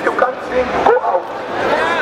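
Overlapping voices of a crowd of adults and children, with short high-pitched cries among them.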